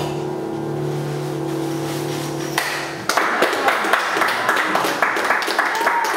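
A low grand-piano chord, struck at the start and held ringing, stops about two and a half seconds in. Audience applause breaks out right after, marking the end of the piece.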